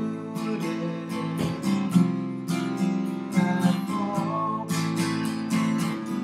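Acoustic guitar strummed in a steady rhythm, the chords ringing on between strokes.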